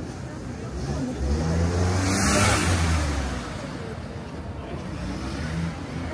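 A motor vehicle passing close by in a narrow street. The engine hum and tyre noise swell from about a second in, peak around two and a half seconds, then fade. Faint passers-by talk around it.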